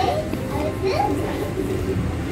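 Children's voices in the background, talking and playing, over a steady low hum.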